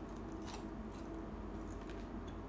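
A handful of light, sharp clicks at irregular intervals over a steady low hum, with no speech.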